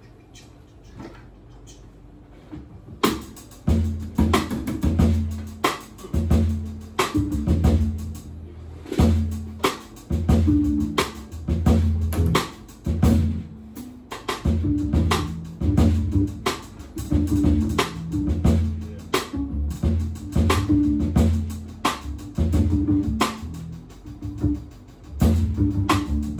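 Jazz piano trio of acoustic piano, upright double bass and drum kit playing a groove. After about three quiet seconds the full band comes in, with drum hits and a repeating bass figure.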